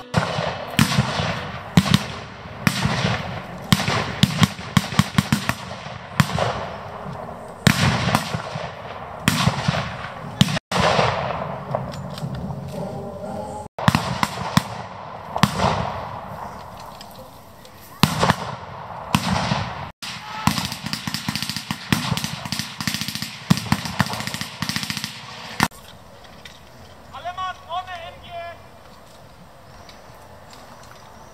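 Blank gunfire from rifles and a machine gun in a staged battle: single shots and short rapid strings at irregular intervals, echoing across the field, stopping about 26 seconds in. A voice calls out near the end.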